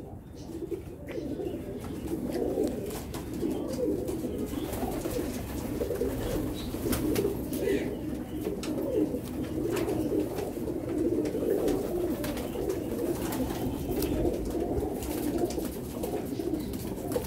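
A loft full of domestic pigeons cooing continuously, many calls overlapping into a steady low warble, with a few scattered faint clicks.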